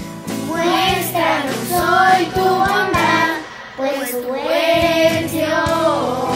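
Children singing a song together over an instrumental backing track, with a brief pause in the singing about three and a half seconds in.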